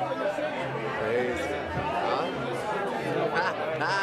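Several people talking at once in an excited, indistinct chatter, with no single clear voice.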